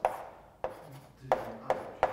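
Chalk knocking and scratching on a blackboard as a fraction is written: four sharp taps over the two seconds, the last two closer together.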